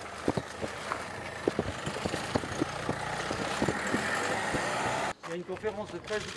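A Peugeot van's engine as it drives slowly out through a gateway, growing louder as it comes closer, with many quick camera shutter clicks over it. Just after five seconds the sound cuts off abruptly and voices take over.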